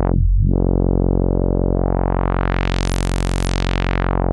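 A low sawtooth synth drone runs through the Dwyfor Tech Pas-Isel Eurorack low-pass filter, a Buchla 191-derived circuit, with its input gain pushed into overdrive. The cutoff is swept shut at the very start, then opened slowly until the tone is fully bright about three seconds in, and starts closing again near the end. The overdrive gives it a thick, woolly character.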